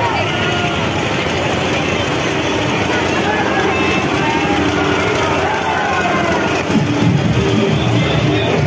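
A dense crowd of many voices talking and calling out over one another in a loud, steady din. About seven seconds in, music with a heavy bass beat comes in louder over the crowd.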